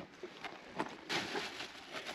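Faint rustling and light clicks of a discarded clear plastic container being picked up out of dry brush, with a short burst of rustle about a second in.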